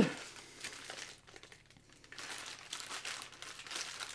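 Plastic wrapping around a monitor stand piece crinkling as it is handled and lifted out of a cardboard box. The rustles are soft and irregular, with a short lull about a second in.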